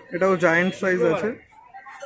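A rooster crowing once, a wavering call of about a second and a half with a short break in the middle.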